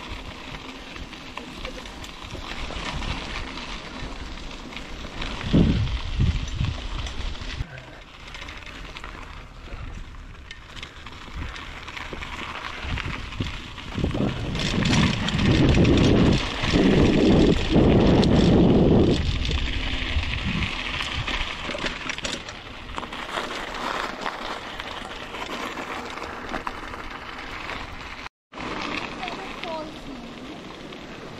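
Mountain bike rolling over a dirt trail, heard from a handlebar-mounted camera: tyre noise and bike rattle under wind buffeting the microphone, with heavy low rumbling stretches in the middle. A brief cut to silence near the end.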